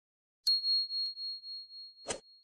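A single high bell ding, a notification-bell sound effect, strikes about half a second in and rings on with a pulsing, fading tone for about a second and a half.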